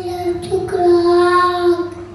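A child's singing voice holding one long, steady note that stops shortly before the end.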